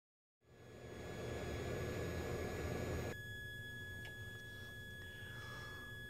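A faint, steady high-pitched whine from a toroidal transformer circuit being pulsed at about 1.6 kHz. Over the first half there is a rushing noise, which cuts off suddenly about three seconds in.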